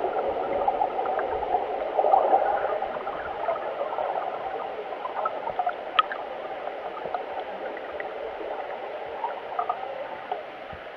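Muffled gurgling and rushing of whitewater heard from underwater, the high end cut off as the camera goes under, with scattered small ticks and pops and one sharper tick about six seconds in. The rush slowly fades.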